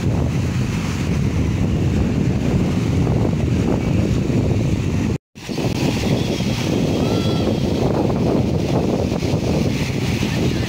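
Wind buffeting the microphone over small waves washing onto a sandy shore, a steady rumbling noise. The sound drops out completely for a moment about five seconds in, then carries on.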